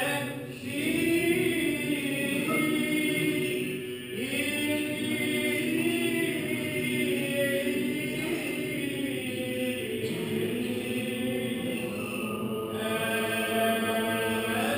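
Greek Orthodox Byzantine chant at vespers: voices singing long, drawn-out melodic lines, with short breaks about half a second in, around four seconds in, and near the end.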